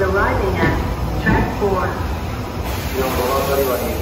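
Kintetsu electric train rolling slowly into the platform with a steady low rumble, while a station PA announcement voice carries over it.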